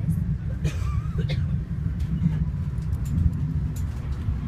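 Steady low rumble of a passenger train running, heard from inside the passenger car.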